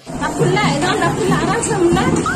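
Several people talking at once, their voices overlapping in a busy babble that starts suddenly.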